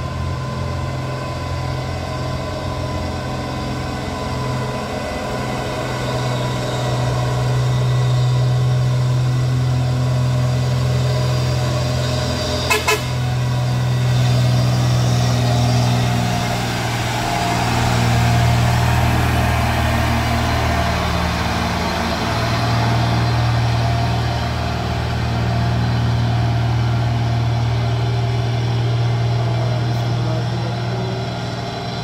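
Mitsubishi Fuso truck's diesel engine pulling steadily up a climb, swelling louder as the truck passes close and then drawing away. About 13 seconds in, a horn gives a quick double toot.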